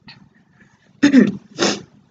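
A woman's short wordless vocal sound, falling in pitch, about a second in, followed by a breathy hiss.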